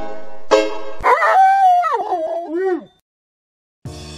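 A few plucked banjo notes end the intro tune, then a dog howls for about two seconds, its pitch wavering and sliding down at the end.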